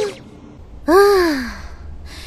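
An anime character's voice making a single breathy exclamation about a second in, its pitch falling like a sigh.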